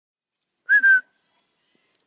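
One short, loud whistle at a steady high pitch, about a third of a second long and broken into two quick parts.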